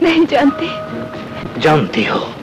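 Film soundtrack: two sudden voice-like cries over a faint held music tone, the first in the opening half second and the second near the end sliding steeply down in pitch.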